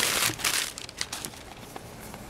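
Crumpled brown kraft packing paper crinkling as it is pulled out of a cardboard shipping box. It is loudest in the first half-second or so, followed by a few fainter crackles.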